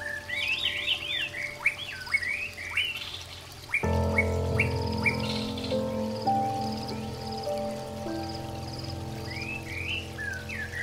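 Songbirds giving quick chirps that glide up and down, over soft sustained pad music. About four seconds in, a louder held chord comes in and the chirping thins. The birds return near the end.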